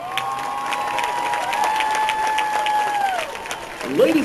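Crowd applauding and cheering, with clapping and long held high whoops above it that die away a little after three seconds in.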